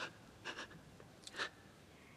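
Faint, short breaths of a man in tears, drawn in and let out three times, about half a second to a second apart.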